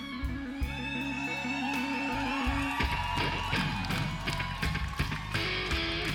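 Live blues-rock band playing an instrumental break: an electric guitar lead with bending notes over held low chords and drums.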